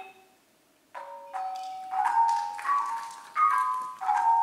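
The last rolled notes of a ranat ek (Thai xylophone) solo die away into a short pause. About a second in, a khong wong yai (Thai circle of bossed bronze gongs) starts its solo with single struck gongs that ring on, notes entering one after another and growing louder.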